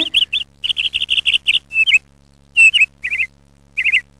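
Birds chirping in quick runs of short high notes, several a second. The chirping breaks off about halfway through, then comes back as one louder call and two short bursts of chirps.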